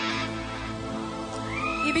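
Television show background music: steady sustained synth chords, with one rising tone that levels off near the end.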